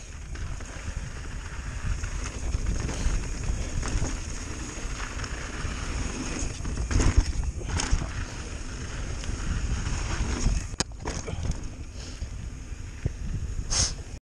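Pivot Firebird full-suspension mountain bike ridden fast downhill on a dirt trail: wind buffeting the microphone and tyres rolling over gravel in a steady rumble, with a few sharp clicks and rattles from the bike, the loudest a little after the middle.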